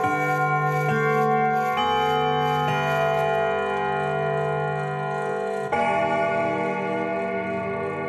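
Recorded clock chime bells playing back, a carillon-style bell sequence. A new bell note is struck roughly every second at first, each ringing on over the last. About six seconds in, a fuller set of bell tones comes in.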